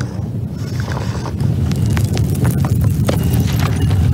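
Deep rumbling of a giant stone sphinx rising out of the sand, growing louder about a second and a half in, with scattered crackles and knocks of falling stones and debris.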